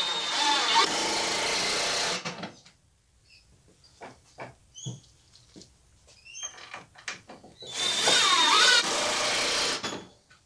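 Power drill driving screws to fasten the miter saw down: two runs of about two seconds each, one at the start and one near the end, with small clicks and knocks between them.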